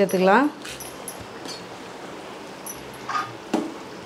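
A few trailing words of a woman's voice, then a faint steady hiss from a pot of okra tamarind gravy simmering in a steel pot. About three and a half seconds in comes a light click or two as a spoon goes in to stir it.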